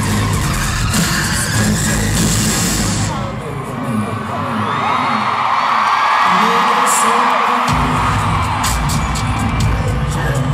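Loud live concert sound in an arena, heard from among the audience. Pounding bass-heavy music plays at first. About three and a half seconds in the bass drops out and the crowd screams and cheers, and the heavy bass comes back in near the end.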